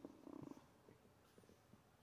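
Near silence: room tone, with a brief faint low buzz in the first half second and a few faint soft ticks a little later.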